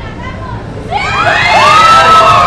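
Crowd murmur, then about a second in several high-pitched voices break into shrieks and cheers that overlap and rise, loudest near the end.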